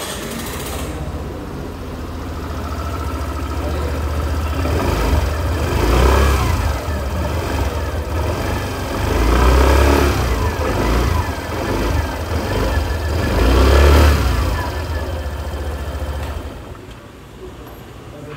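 Suzuki Burgman Street 125 scooter's single-cylinder four-stroke engine, started with the handlebar start button, idling and then revved three times, about four seconds apart, before it is switched off near the end.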